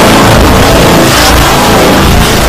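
Heavily distorted, clipped audio from several layered logo soundtracks playing at once: a loud, dense wall of noise with no clear tune or voice.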